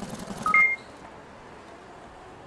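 Two short electronic beeps about half a second in, a lower tone followed at once by a higher one. They sit over a low pulsing hum that cuts off just after them, leaving a faint steady hiss.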